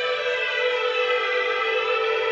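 Electric guitar run through effects pedals, holding a dense, sustained drone of many layered tones whose pitches slowly bend down and up, siren-like; a low note swells about half a second in.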